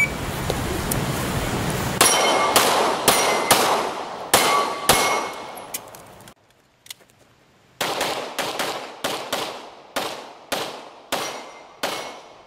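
Pistol shots on an IPSC stage. A string of about six shots roughly half a second apart comes first, then a pause of about three seconds with one faint click, then a faster string of about a dozen shots.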